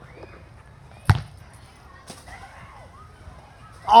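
One sharp thump of a rubber ball being struck, about a second in, with a faint second knock a second later, over quiet outdoor background.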